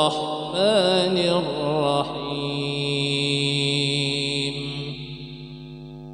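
A man's voice chanting Quranic recitation in maqam Hijaz: an ornamented, wavering run in the first two seconds, then one long held note that slowly fades.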